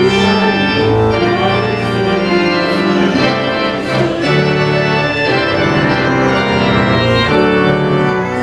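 Church organ playing a hymn in slow held chords that change about every second.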